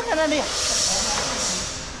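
A short word, then a steady high hiss lasting about a second and a half that slowly fades.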